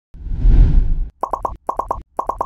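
Cartoon logo-intro sound effects: a low rumbling whoosh lasting about a second, then six short, bright pops in two quick groups of three as letters pop into place.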